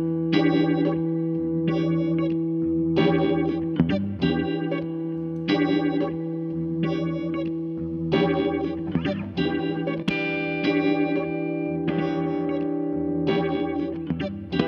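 Gretsch 7680 Atkins Super Axe electric guitar played through a Fender Vibroverb amp with effects: chords struck every second or so over a held low note.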